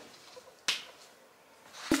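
A single sharp click about two-thirds of a second in, against a quiet room.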